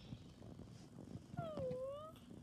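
Maltese puppy giving a single short whine about one and a half seconds in, dipping in pitch and rising again. Faint clicks of chewing come before it.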